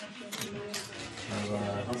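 Several people's voices talking quietly over one another as greetings are exchanged in a small room, with a few sharp clicks.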